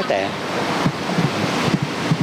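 A steady rushing background noise, loud and even, with a few brief fragments of a man's voice.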